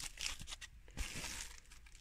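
Faint rustling and crinkling of a thin 6 mm dense-foam sheet being handled and flexed against fleece insulation, with a small click about a second in.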